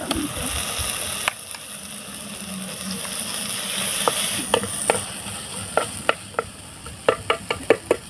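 Onions and paste sizzling in oil in a clay pot while a metal spoon stirs and scrapes through them. In the second half a run of sharp clicks comes faster toward the end.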